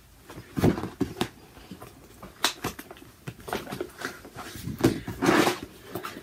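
Rustling of a linen cross-stitch piece being refolded and handled together with a sheet of paper and a project bag, in a string of short, irregular rustles and crinkles.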